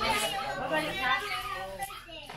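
Several children's and young people's voices talking and calling out over one another, children at play.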